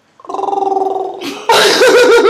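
A person's long, steady croaking throat sound, about a second long, followed about halfway in by loud laughter.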